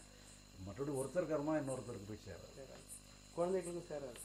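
Insects chirping faintly in the background, short high chirps repeating irregularly a couple of times a second, under a man's speaking voice.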